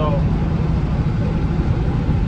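Steady low rumble of a vehicle's engine and tyres, heard from inside the cabin while driving on a snow-covered road.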